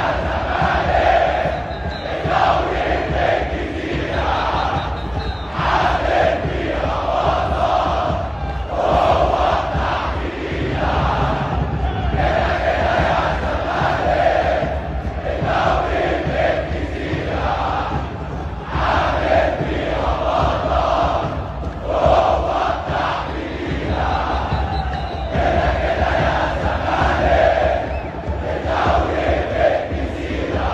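Large crowd of football supporters chanting together in unison, a repeated chant in phrases of about two seconds each.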